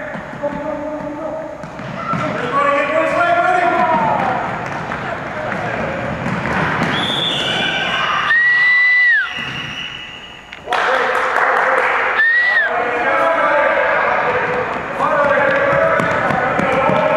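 Children's voices shouting and calling in an echoing gym, with running feet and thuds on the wooden floor. A shrill high note lasting about a second sounds a little past halfway, and a shorter one a few seconds later.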